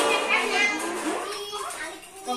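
Young children's voices chattering and calling out over one another in a room.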